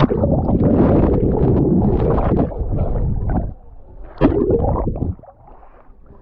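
Water sloshing and gurgling right against a swimmer's phone microphone held at or in the water. It is a loud, muffled rush for about three and a half seconds, with a second, shorter rush about four seconds in.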